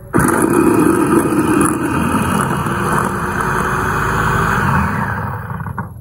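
Electric food chopper running, its motor spinning the blade through meat in a stainless steel bowl. It starts abruptly and runs steadily, then winds down about five and a half seconds in.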